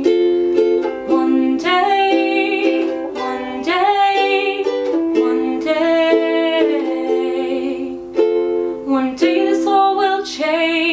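Ukulele strummed in chords while a woman sings a melody over it.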